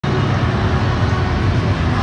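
Loud, steady low rumbling background din of a large convention hall.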